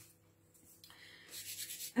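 Near silence, then from about a second in a faint dry rubbing rustle of floury hands.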